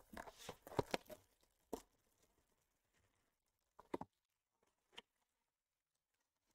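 Faint crackling and crinkling of clear plastic shrink-wrap being torn off a trading-card box and the cardboard lid opened. There is a quick run of small crackles in the first second, then a few single clicks spread out after it.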